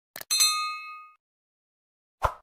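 Subscribe-button animation sound effect: a quick double click, then a single bell ding that rings out and fades within about a second.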